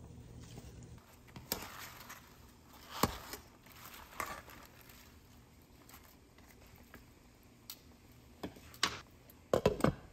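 Mustard greens rustling as they are dropped into a soup pot and stirred with a ladle, with a few light knocks against the pot. Near the end, a glass lid knocks several times as it is set onto the pot.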